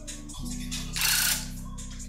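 Electric tufting gun running with a steady, fast-fluttering buzz that steps up in pitch about half a second in, with a brief hiss about a second in.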